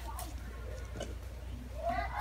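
A cat meows near the end, a single pitched call that rises and bends.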